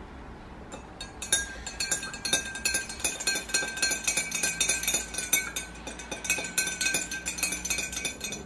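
Metal teaspoon clinking rapidly and repeatedly against the inside of a glass tumbler while stirring water and oil, the glass ringing under the strikes. It starts about a second in.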